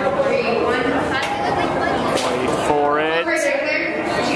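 Several people talking over one another, with one voice rising into a brief, high cry about three seconds in.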